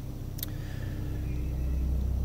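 Low rumble of an approaching motor vehicle, growing gradually louder, with a single click about half a second in.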